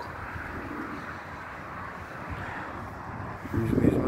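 Steady rushing outdoor noise of wind and distant motorway traffic. A man's voice comes back in just before the end.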